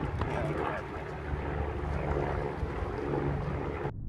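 Low, steady rumble of wind buffeting the microphone, with faint talk underneath; the sound turns dull and muffled just before the end.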